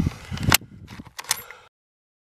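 A few sharp metallic clicks and clacks of a bolt-action rifle's bolt being worked after a shot: one loud click about half a second in and two quicker ones a little past a second. The sound then cuts off abruptly.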